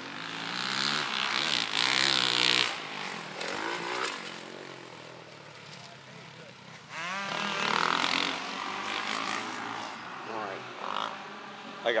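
Dirt bike engines revving on a motocross track, the sound swelling twice, about two seconds in and again about eight seconds in, the pitch rising and falling with the throttle.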